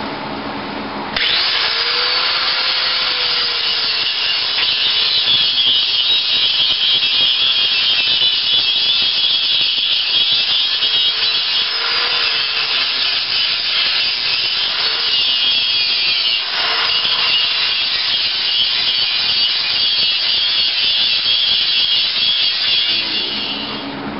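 Electric angle grinder cutting into metal tubing. It starts about a second in and runs steadily with a high-pitched whine and hiss, dipping briefly in pitch a few times as the disc bites. It winds down near the end.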